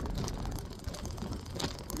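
Wind rumble and road noise from a bicycle being ridden, with a few faint clicks and rattles from a loose handlebar phone mount.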